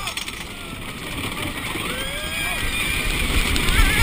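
Wooden racing roller coaster train rumbling along its track with wind rushing over the microphone and riders yelling and screaming. The rumble and wind grow louder near the end as the train heads down a drop.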